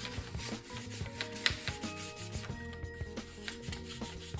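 Fingers rubbing blue pastel into a paper plate, an irregular dry scratching and scuffing of skin on paper as the colour is blended in circles.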